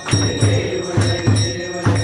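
Group of men chanting a devotional song in unison, clapping in a steady rhythm, with a bell ringing.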